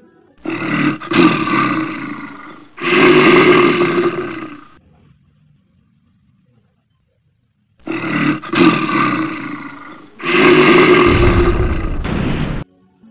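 Recorded animal roar sound effect: two long roars back to back, then after a pause of about three seconds the same pair again.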